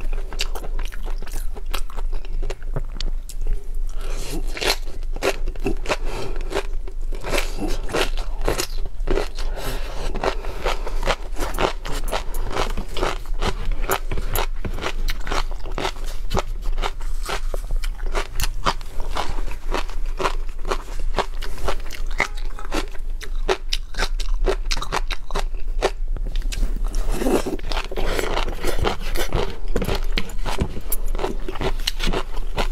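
Close-miked eating sounds: wet chewing of raw shrimp and flying-fish roe, with dense, irregular crackling and popping as the tobiko bursts. At times a plastic spoon scrapes across the tray.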